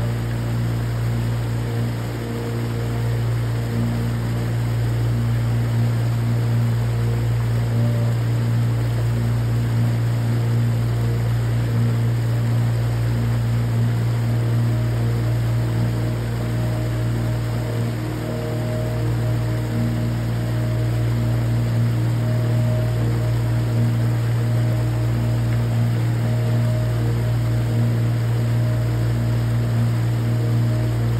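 Creek water pouring over a low rock ledge into a churning pool, a steady rushing hiss, with soft ambient music of long held notes underneath.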